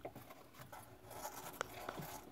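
Faint scratching and rustling on cardboard with a few light clicks, a hamster moving about beside a gloved hand.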